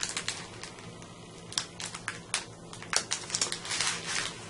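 Fingernails picking and scratching at the edge of the red backing liner on a strip of double-sided sticky strip, with light paper crinkling: scattered small ticks and scrapes that come in little clusters. The liner is stubborn to lift.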